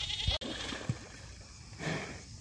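Water buffalo wallowing in a muddy pool: water splashes and sloshes as it shifts its body, loudest in the first half second and again briefly near the end.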